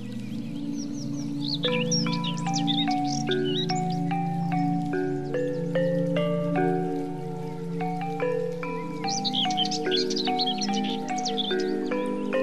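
Calm ambient background music: a sustained low pad under a slow melody of bell-like mallet notes. Quick high bird chirps twitter over it in two spells, about a second and a half in and again near the end.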